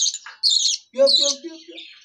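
Young budgerigar's high-pitched begging calls, three short calls about half a second apart, while being hand-fed from a spoon. A man's brief low voice sound comes in about a second in.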